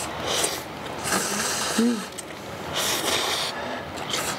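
Ramyeon noodles slurped in three hissing draws, a short one at the start and two longer ones after, with a brief "mm" hum between them.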